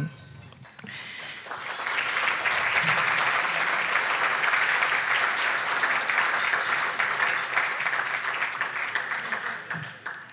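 Audience applauding, the clapping building up over the first second or two, holding steady, then dying away near the end.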